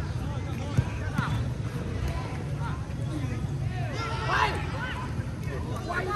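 Scattered shouts and calls of football players across the pitch, loudest about four seconds in, over a steady low rumble, with a single sharp knock about a second in.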